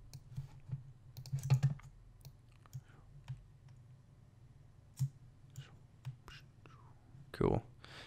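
Scattered, irregular clicks of a computer mouse and keyboard, over a low steady hum.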